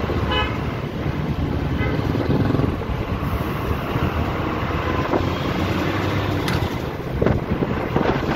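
Bus engine running with steady road noise while moving through town traffic. A vehicle horn toots briefly in the first couple of seconds.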